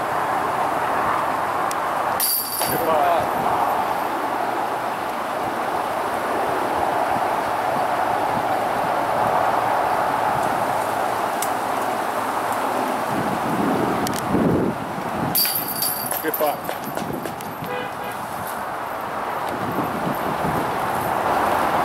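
Strong, steady wind noise throughout, with short snatches of people's voices and two brief sharp clatters, one about two seconds in and one about fifteen seconds in.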